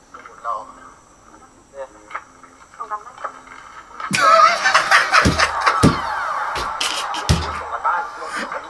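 Soundtrack of a comedy sketch: faint dialogue, then about four seconds in a sudden loud burst of noisy sound effects with music, sharp crackles and three heavy thumps.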